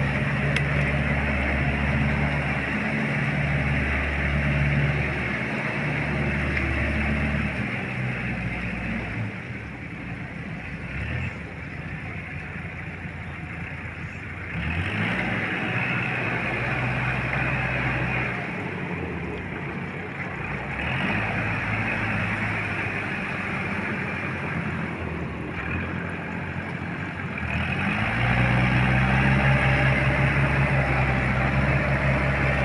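Small four-wheel farm tractor's diesel engine running under load while pulling a rotary tiller through a wet, muddy field. The engine note shifts several times with the load, and the sound grows and fades, loudest near the start, in the middle and toward the end.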